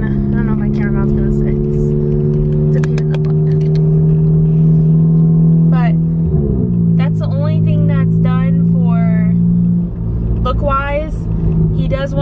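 Modified, big-turbo Volkswagen GTI's turbocharged four-cylinder engine droning inside the cabin while driving. Its pitch creeps slowly upward for about six seconds, drops suddenly, holds steady, and then falls away near the end.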